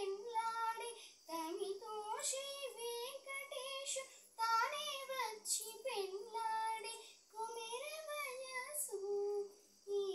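A girl singing solo, a melodic line with long held notes, in phrases of about three seconds broken by short pauses for breath.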